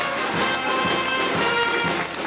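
Brass band playing, with several notes held steadily together.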